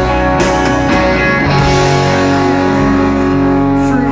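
Live rock band playing amplified guitars, bass and drums. Two cymbal hits in the first half second, then the band holds a sustained, ringing chord for the last couple of seconds.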